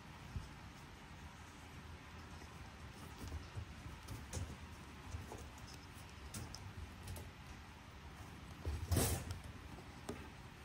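Faint small clicks and handling noises of a perforated metal sheet being pressed and worked into the groove of a wooden frame, with one louder brief scrape about nine seconds in.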